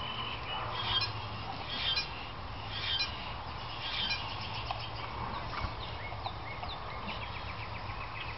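Birds chirping and calling: a phrase about once a second in the first half, then quick chirps and a rapid trill, over a steady low hum.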